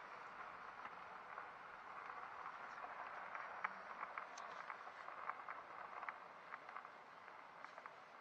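Faint crunching with scattered small pops of gravel under a slowly rolling vehicle's tyres, heard from inside the cab.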